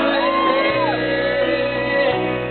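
Live pop-rock band playing amplified electric guitars, bass and drums, with a singer's voice on top: one sung note rises, is held, and falls away about a second in.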